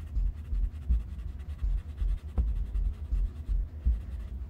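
Pencil drawing on a paper sketchpad: light, irregular scratching strokes, with soft low bumps from the pad being handled.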